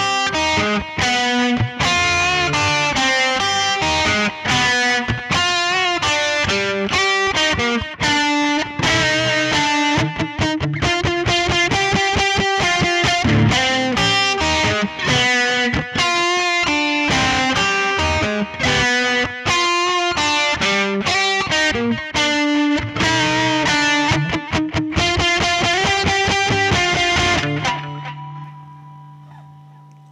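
Harley Benton Stratocaster-style electric guitar picked through a blues amp preset: a continuous run of single-note licks and chords, ending about 28 seconds in on a held chord that rings out and fades.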